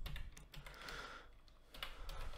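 Computer keyboard being typed on, faint: a quick run of keystrokes at the start and another near the end.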